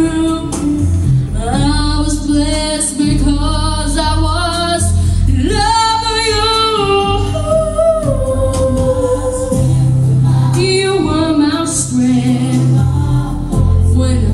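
A girl singing into a handheld microphone, holding long notes that slide and waver in pitch, over low bass notes that change every few seconds.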